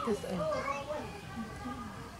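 Children's voices talking, with fairly high-pitched speech throughout.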